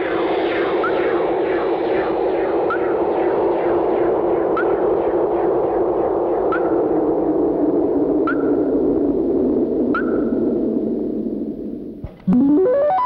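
Eerie synthesized soundtrack effect: a dense, echoing noisy drone with a faint rising chirp repeating about every two seconds, fading out near the end.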